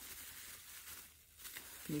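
Faint crinkling of a thin plastic bag being handled, with a short lull about a second in.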